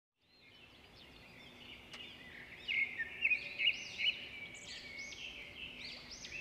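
Birds chirping, a quick run of many short high chirps. They fade in from silence and grow louder over the first few seconds.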